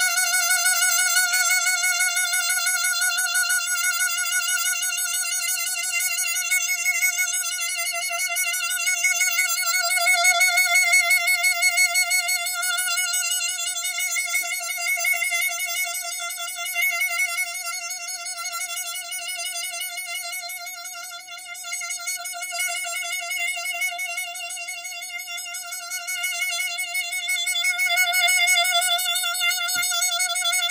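Harmonica holding one loud, unbroken note for the whole half minute, with a fast wavering vibrato and the volume swelling and easing, dipping once about two-thirds of the way through. It is a sustained breath-control hold of about 30 to 35 seconds, played with resonance rather than force of air.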